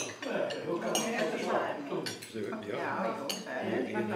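Forks and knives clinking against plates during a meal, several sharp clinks spread through, over the murmur of table conversation.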